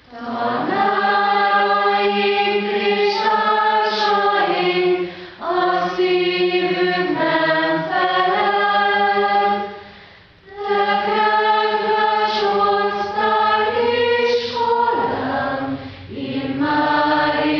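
A choir singing slow, sustained chords in long held phrases, with a brief break about five seconds in and a longer pause near ten seconds.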